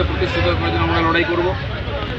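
A man speaking, with one long drawn-out vowel in the middle. A steady low rumble runs under the voice.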